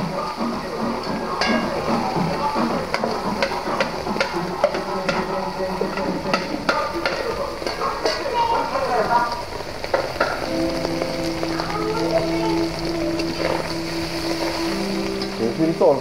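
Flaked salt fish frying in oil in a wok, with a steady sizzle while a spatula scrapes and clicks against the pan as the fish is stirred. From about ten seconds in, a few steady held tones sound faintly in the background.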